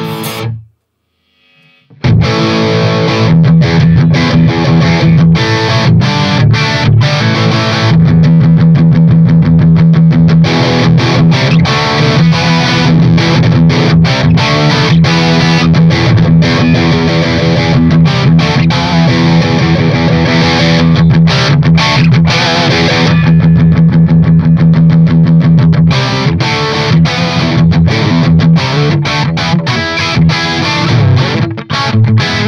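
Distorted electric guitar played through a tube amp and a Fryette Power Station PS-2A into a speaker cabinet, starting about two seconds in after a short pause. The treble drops away twice and comes back as the Power Station's presence and depth controls are turned.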